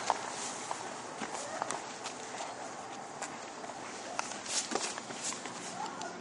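Footsteps and scuffs on pavement, with scattered light clicks and knocks.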